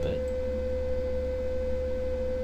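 A steady, unchanging mid-pitched tone over a low hum, the kind of electrical whine that sits in a recording's background.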